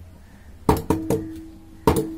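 Stainless-steel bowl knocking against a large steel plate as flour is tipped out of it: three quick knocks, then a fourth near the end, the metal left ringing with a steady tone.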